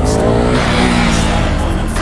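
Motorcycles riding past at speed, their engines revving with the pitch rising and falling.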